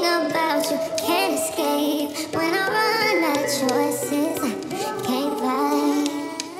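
Sped-up R&B song: a pitched-up female lead vocal sung over the backing track, with added reverb.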